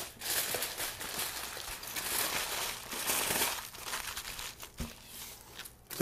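Aluminium foil crinkling and crumpling as it is folded and wrapped around a portion of raw pork ribs, in uneven rustling bursts that die down near the end, with a soft knock just before it stops.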